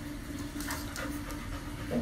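A dog panting with its mouth open, in short breaths, over a steady low hum; a bark starts right at the end.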